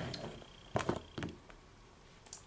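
Two light clicks of a plastic toy dinosaur figure being set down on a tile floor, about half a second apart, the first the louder.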